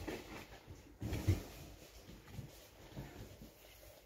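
Faint low thumps and shuffling of a person moving about in a small room, footsteps with the strongest thump about a second in.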